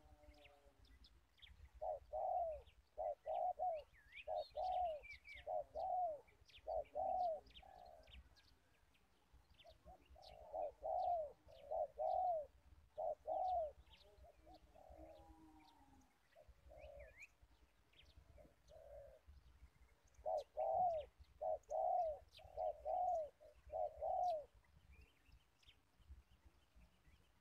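A dove cooing in three runs of about six arched coos each, with pauses between the runs. Faint high chirps of small birds are scattered over it.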